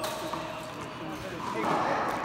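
A paddleball struck once with a sharp crack at the start, echoing in the large indoor court, over background voices.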